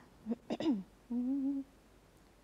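A woman's voice gives a short falling vocal sound, then hums one steady note for about half a second, just before she starts singing.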